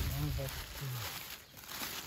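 Thin plastic bag crinkling as a hand rummages in it for boxes of shotgun shells, with a voice talking softly in the first second.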